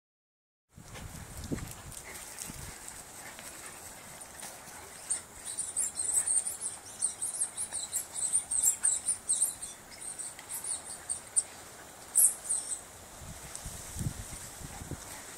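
A beagle, a Rhodesian ridgeback and a Weimaraner play-fighting on grass: scuffling and running, with a busy run of quick, high-pitched sounds from about five seconds in until near the end.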